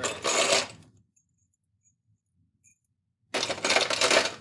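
Metal nails rattling and clinking together in two bursts of about a second each, one at the start and one near the end, as the nails are handled and emptied out between loadings.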